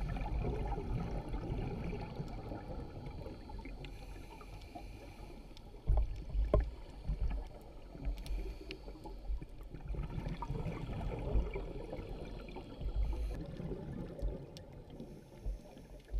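Muffled underwater sound through a camera's waterproof housing: an uneven low rumble of water moving around the housing, with scattered faint clicks and a few louder thumps, about six seconds in and again near thirteen seconds.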